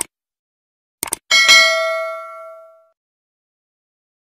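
Subscribe-button sound effect: a mouse click, a quick double click about a second later, then a bright notification-bell ding that rings out for about a second and a half.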